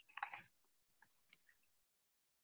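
Near silence, with a brief soft rustle-like noise just after the start and a few faint clicks after it; the sound then cuts out completely.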